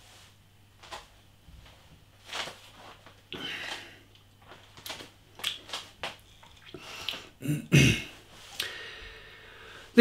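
A man sipping and swallowing beer, then tasting it with small lip-smacking and breathing sounds, and clearing his throat near the end.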